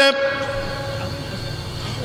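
A steady chord of ringing tones from the public-address loudspeakers: the sermon's last sung note carrying on as echo and slowly dying away over about two seconds, over a low hum.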